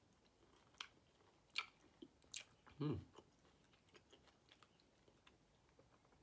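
Faint mouth sounds of a person chewing a segment of easy-peeler citrus, with a few sharp, wet clicks spaced through the first half. About halfway through comes a short closed-mouth 'hmm' of tasting.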